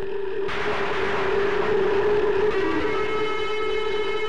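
Dramatic film background score: a steady held tone, a sudden burst of hiss-like noise about half a second in that fades away over about two seconds, then a held chord of several steady notes.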